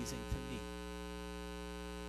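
Steady electrical mains hum with a buzzy edge, holding level throughout.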